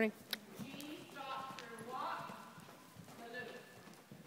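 A horse's hoofbeats at a jog, quiet and irregular, under faint voices.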